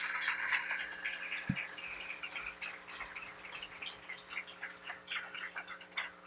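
Audience applauding, strongest at the start and gradually thinning out, with a brief low thump about a second and a half in.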